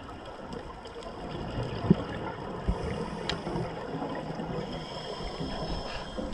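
Underwater sound picked up through a camera housing during a scuba ascent: a steady wash of noise from divers' exhaled regulator bubbles, broken by a sharp click about two seconds in and a fainter one a little after three seconds.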